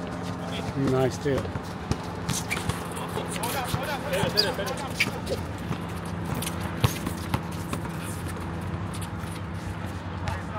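Basketball being dribbled on an outdoor court, with scattered sharp bounces and players' running footsteps, over a steady low hum.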